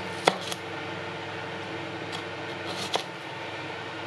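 Kitchen knife slicing through a shallot onto a plastic cutting board: a sharp tap of the blade on the board about a third of a second in, then a few fainter taps later on.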